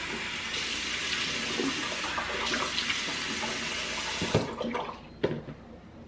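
Bathroom sink faucet running steadily onto hands and into the basin, then shut off about four and a half seconds in. Two short sharp sounds come right after it stops.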